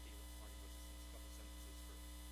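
Steady low electrical mains hum with a set of fainter steady higher tones above it, and faint speech in the background.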